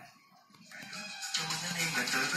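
Car CD/USB head unit starting playback from a USB stick: after a brief silence, music fades in from its speaker about half a second in and grows louder.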